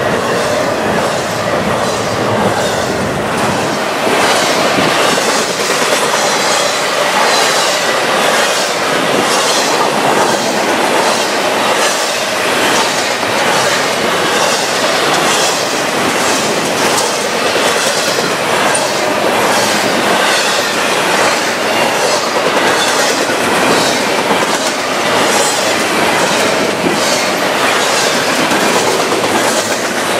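Intermodal freight cars rolling past at speed close by: a steady rush of steel wheels on rail with a regular clickety-clack as the wheels cross rail joints.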